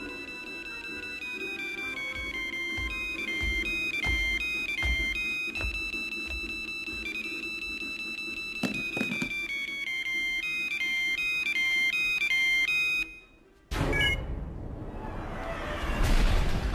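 A mobile phone ringtone plays a repeating stepped melody over low, irregular thuds of score music. It cuts off abruptly about two seconds before the end, and after a moment's hush a sudden loud hit follows.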